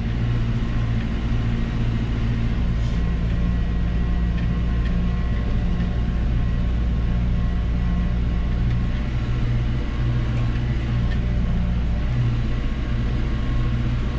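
Tractor engine running at a steady, even pitch, heard from inside the cab while it tows a slurry tanker spreading liquid manure. A faint steady high whine sits above the engine note.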